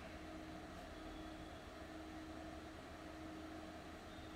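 Faint steady hiss with a thin low hum: the room tone and line noise of a recording, with no speech.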